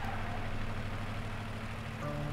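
Engine of an old truck running steadily at low volume, a low even hum.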